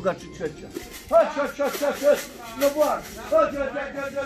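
A man calling racing pigeons in to the loft with a rapid run of repeated, sing-song coaxing calls, while rattling grain in a feed tin to draw them down.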